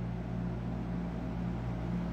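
Room tone: a steady low hum with a faint even hiss, with no other sound over it.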